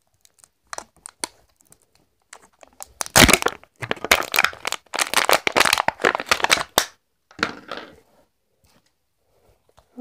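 Wrapping on an LOL Surprise Pets toy ball being torn and crinkled by hand. A few faint crackles come first, then a long run of loud crinkling and tearing, and one more short burst after it.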